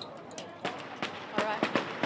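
A string of firecrackers going off: about seven sharp cracks in quick, uneven succession, starting about half a second in and coming faster toward the end.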